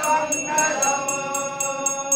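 A brass hand bell (ghanta) rung steadily, about four to five strokes a second, during the aarti, over voices singing or chanting together.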